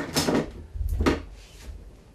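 A few sharp knocks and clatters of paint tubes and painting tools being picked up and set down on a cluttered worktable. They come near the start and again about a second in, then it goes quieter.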